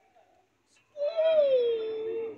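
A child's voice starting about a second in: one long drawn-out call that slides down in pitch and then holds steady.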